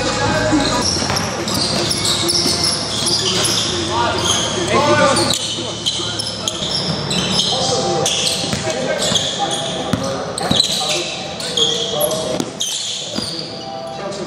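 Basketball scrimmage in a large gym: the ball bouncing on the hardwood floor, short high squeaks of sneakers, and indistinct voices of players calling out, all with a hall echo.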